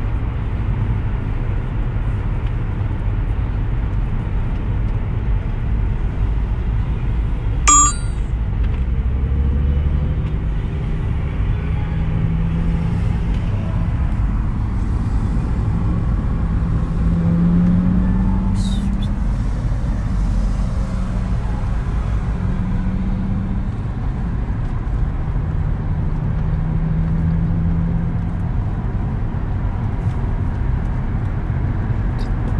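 Steady road and engine noise heard inside a moving car's cabin on a highway: a low rumble with a faint engine hum that drifts slightly up and down in pitch. About eight seconds in, a brief sharp click stands out above it.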